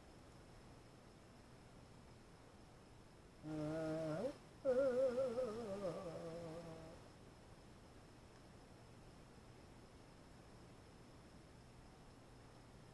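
A man humming to himself: a held note about three and a half seconds in, then a wavering, slowly falling phrase lasting a couple of seconds. Faint room tone otherwise.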